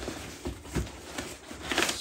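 Cardboard shipping box being opened by hand: flaps pulled open and brown paper packing crinkling in a few short, irregular rustles, loudest near the end.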